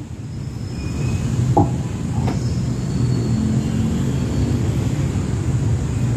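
Steady low rumble of a motor vehicle engine in street traffic. It swells over the first second or two and then holds level.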